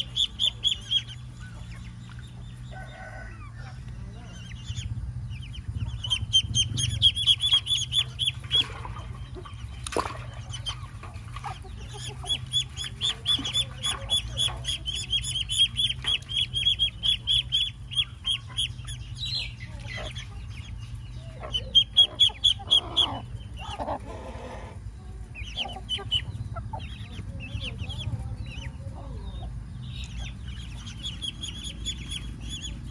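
Muscovy ducklings peeping: runs of short, high-pitched peeps repeated rapidly, with a few brief pauses.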